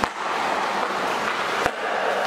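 Two sharp cracks of a hockey stick striking a puck on ice, one right at the start and one about 1.7 seconds later, each echoing off the concrete walls of a tunnel. A steady hiss runs underneath.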